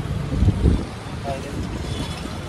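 Quiet voices in a shop, with a brief low rumbling thump about half a second in.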